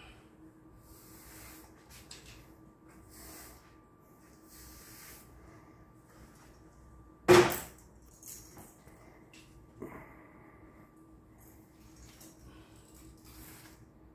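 Faint, soft swishes of a paintbrush on an extension pole stroking paint along a wall-ceiling corner, over a faint steady hum. About seven seconds in comes one sharp, loud knock, and a lighter knock near ten seconds.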